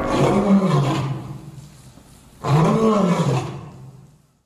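A tiger roaring twice, each roar a drawn-out call that rises and then falls in pitch; the second begins about two and a half seconds in.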